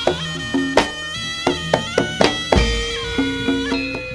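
Live jaranan ensemble music: a reedy, bagpipe-like wind instrument, in the manner of a slompret shawm, carries a sustained melody over regular drum strokes. A deep low stroke comes in about two-thirds of the way through.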